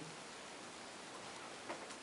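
Quiet room tone with a steady faint hiss, and two faint clicks close together near the end.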